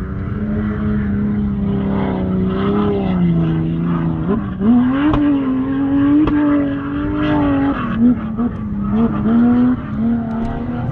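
A 4x4's engine running close by, its pitch stepping up about four seconds in as it revs higher and then holding with small dips and rises. Two sharp clicks come a little after five and six seconds.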